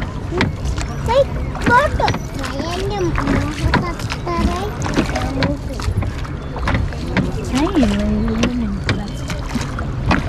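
Wooden rowboat being rowed: oars working in their gunwale oarlocks and dipping into the water, with short sharp knocks throughout.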